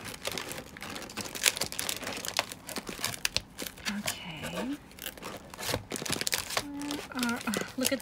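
Papers and plastic-wrapped packs rustling and crinkling in a cardboard box as a hand flips and digs through them, in a dense, irregular run of rustles. A brief hum comes from a voice about halfway, and murmured words near the end.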